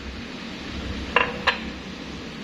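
A ceramic cup set down on a countertop: two short, hard clinks about a third of a second apart, over a steady low hum.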